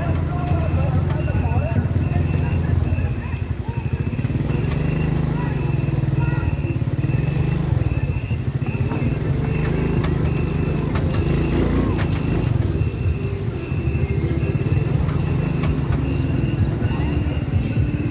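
Small motorbike engine running steadily, a low continuous drone that holds through the whole stretch.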